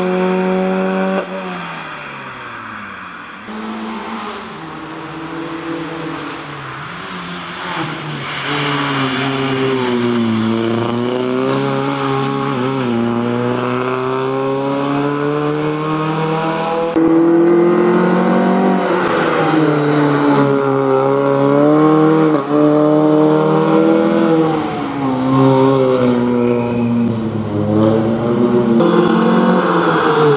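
Citroën C2 rally car's engine worked hard, its revs climbing and dropping again and again with gear changes and lifts off the throttle. The sound changes abruptly a few times, once near the start and once about halfway.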